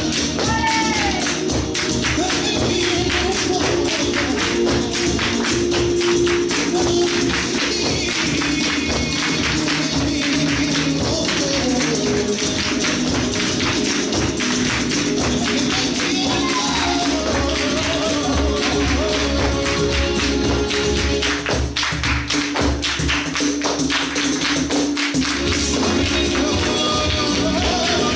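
Flamenco music with dense, rapid percussive striking throughout: the dancers' hand-clapping (palmas) and heel-and-toe footwork on a wooden floor.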